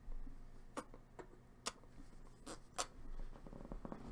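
A handful of faint, sharp clicks, about five spread over two seconds starting near one second in, with light rustling between them.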